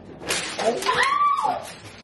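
A single drawn-out, meow-like cat call that rises and then falls away, loudest about a second in, over a noisy rush.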